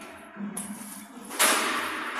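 A sudden loud burst of noise about one and a half seconds in, fading away over the next second, against faint workshop room noise.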